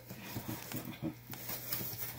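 Cardboard box flaps being folded open by hand: faint, scattered rustles and light taps of cardboard.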